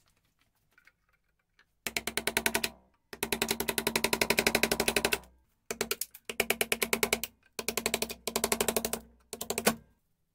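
A chisel tool chattering against a car brake pad clamped in a steel vise, chipping the friction lining off the backing plate. Rapid, evenly spaced strikes come in several bursts, the longest about two seconds.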